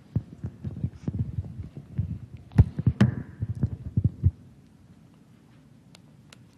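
Handling noise on a handheld microphone: a quick run of low thumps and clicks as a water bottle and glass are handled, with one sharper click and a short ring about three seconds in, stopping after about four seconds.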